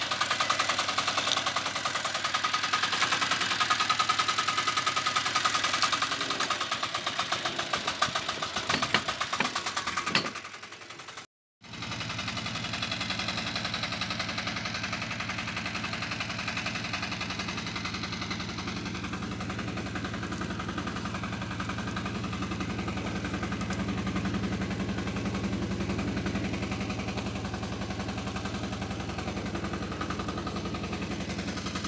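A motocultor (walking tractor) engine running with rapid, even firing pulses. It cuts out briefly about eleven seconds in, then runs on more evenly.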